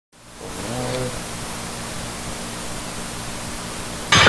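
Steady hiss of noise that fades in at the start and holds level, with a faint wavering sound about a second in.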